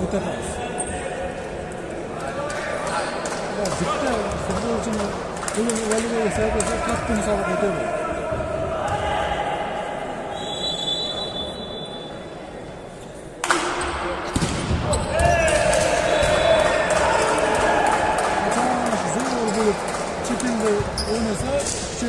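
Volleyball play in an echoing sports hall: spectators' and players' voices throughout, with ball strikes. About ten seconds in, a short high whistle blast sounds. A sharp hit of the ball follows a couple of seconds later, and the shouting grows louder after it.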